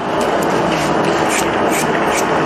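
A knife slicing kernels off a corn cob into a metal basin, with a few brief strokes, over a steady rushing noise.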